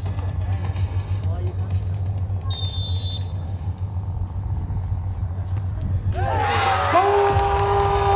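Outdoor beach soccer match sound with a steady low hum throughout. About six seconds in, a loud drawn-out shout of held notes rises as a goal goes in.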